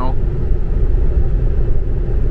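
Steady low road rumble inside a Tesla electric car cruising at about 65 mph on a two-lane asphalt road: tyre and wind noise with no engine note.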